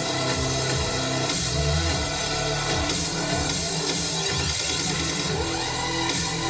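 Electronic music playing loudly, with held bass notes and sustained synth tones.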